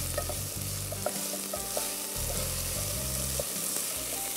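Chicken pieces and diced carrots sizzling in oil in a nonstick pot, stirred with a wooden spatula, with a steady frying hiss and a few light clicks of the spatula in the first two seconds.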